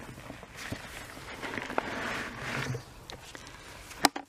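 Footsteps through long grass, rustling in several swells with a few soft clicks.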